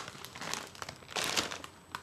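Plastic bag of Tostitos Hint of Lime tortilla chips crinkling as it is picked up and handled, loudest a little past a second in.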